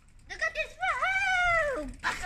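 A cat meowing: a few short sounds, then one long meow that falls in pitch at the end.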